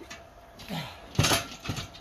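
A heavy tractor tire on a hinged metal tire-flip frame tipping over and landing with one loud thud and clank a little past a second in, with smaller knocks before and after.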